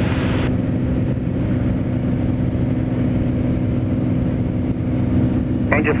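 Steady drone of a small plane's engine and propeller heard inside the cockpit, on final approach just before landing. A radio voice from air traffic control starts near the end.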